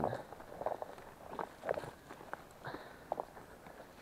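Footsteps of a person walking through forest undergrowth, leaves and brush rustling with each step at a steady walking pace.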